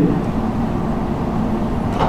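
Steady, even background noise of a lecture hall with no distinct event: room tone.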